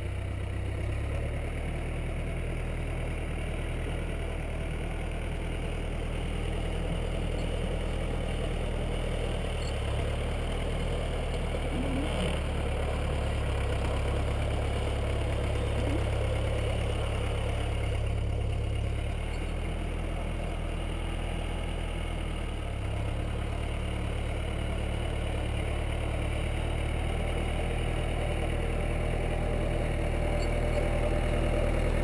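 Tractor diesel engine running steadily at low revs, with small rises and falls in level.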